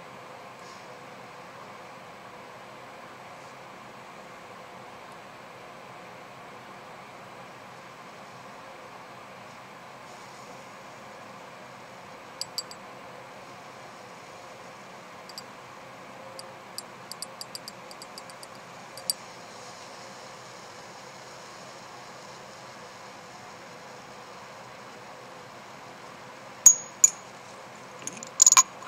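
Steady faint room hiss, with a few small ticks and clicks in the middle and two sharper glassy clinks near the end, as drops of water go from a dropper into a glass test tube of hydrate salt.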